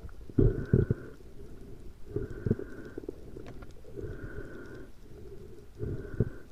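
Muffled underwater swishing and knocking picked up through an action camera's waterproof housing, swelling in regular pulses a little under two seconds apart.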